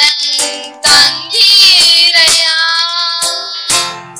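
Boys singing a devotional song in sustained, wavering phrases, accompanied by a Yamaha PSR-S775 electronic keyboard.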